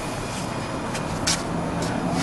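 Steady background hum and hiss with a few faint, brief clicks.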